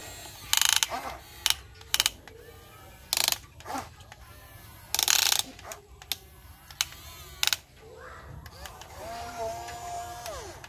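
Huina radio-controlled toy excavator's small electric gear motors running in short bursts, with a ratcheting gear clatter, as the arm and bucket dig into soil.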